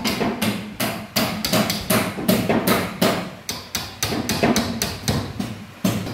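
Hammer blows on the timber frame of a wooden building under construction: a fast, uneven run of sharp strikes, about three to four a second, each ringing briefly.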